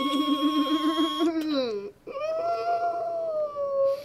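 A girl's long, high-pitched whine amid laughter: one wavering note that slides down and breaks off about two seconds in, then a second, higher note held and slowly falling.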